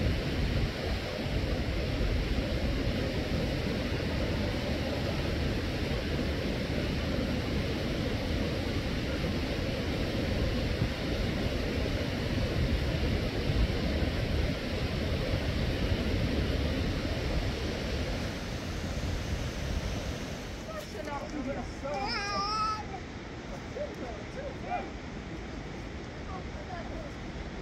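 A steady rushing noise, heavy in the low end, that drops off sharply about 21 seconds in. Soon after comes a short quavering voice call.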